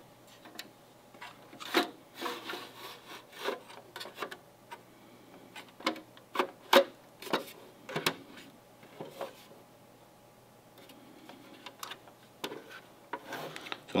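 Plastic outer shell of a Verizon CR200A 5G gateway being slid back over its internal chassis by hand: irregular scrapes and rubs of plastic on plastic with sharp clicks, easing off for a few seconds near the end.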